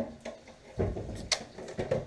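A few knocks and a sharp click as things are handled on a kitchen counter: a low dull knock a little under a second in, then a short sharp click.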